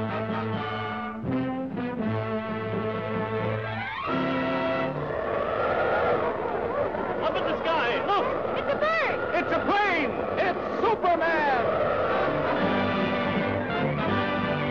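Orchestral brass fanfare from a 1940s cartoon title sequence. From about four seconds in, a dense swirl of swooping glides rises and falls over the orchestra for several seconds, before held brass chords return near the end.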